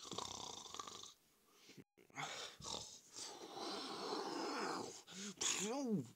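Cartoon snoring from Donald Duck asleep: long noisy wheezing breaths, ending near the end in a short squawky vocal sound that rises and falls in pitch.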